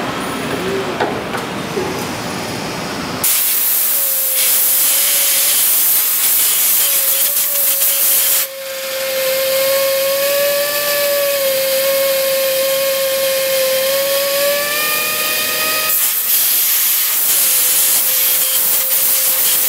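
Portable reaming machine cutting in an aircraft wing attach fitting: a loud hiss with a steady, slightly wavering whine. It comes in suddenly about three seconds in, cuts out for a moment about eight seconds in, and changes in tone near the end.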